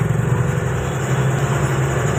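Engine of a large road vehicle heard from inside its cab while driving, a steady low drone.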